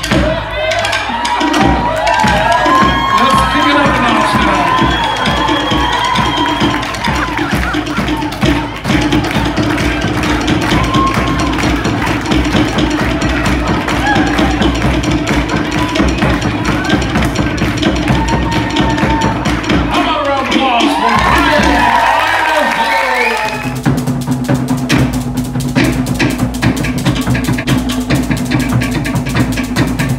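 Fast Polynesian drumming with a wood-block-like slit-drum beat, with many voices whooping and shouting over it in the first few seconds and again around twenty seconds in. A little past twenty-three seconds it cuts to different, steadier music.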